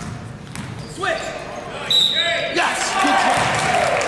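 Basketball bouncing on a hardwood gym floor, with short sneaker squeaks, then loud shouting voices from about two and a half seconds in, all echoing in the gym.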